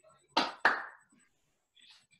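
Two sharp knocks about a third of a second apart, the second trailing off briefly, heard through a video-call connection.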